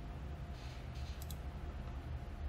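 Computer mouse clicking, with two quick clicks just past a second in, over a faint steady low hum.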